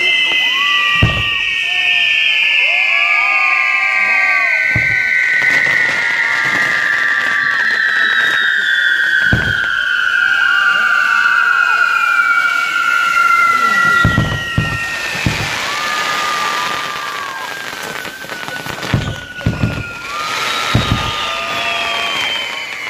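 Castillo firework tower burning: whistling fireworks give a long high whistle that slowly falls in pitch, fading about two-thirds of the way through, with shorter whistles repeating over it. Sharp bangs go off every few seconds, several close together near the end.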